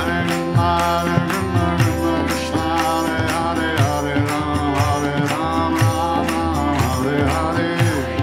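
Kirtan music: a harmonium holds sustained chords under a chanted melody, while tabla and small hand cymbals keep a steady beat.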